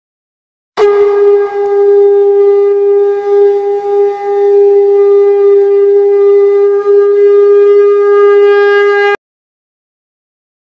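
Conch shell (shankh) blown in one long, steady, horn-like note, the call that closes an aarti. It starts sharply about a second in, wavers slightly in loudness and stops abruptly near the end.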